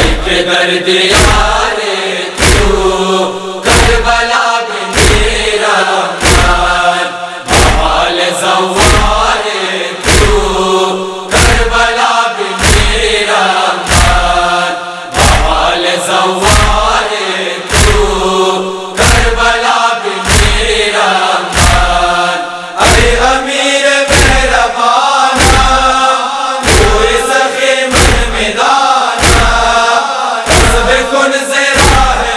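A noha, a Shia mourning lament, chanted by voice over a steady deep thump about once a second that keeps the matam beat.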